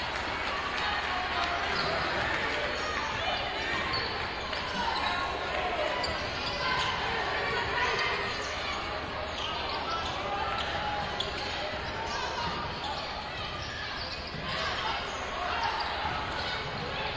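Basketball being dribbled on a hardwood court during live play, with players' and spectators' voices in the gym.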